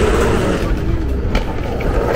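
Busy airport terminal concourse ambience: a steady low rumble with faint background voices, and one sharp click about one and a half seconds in.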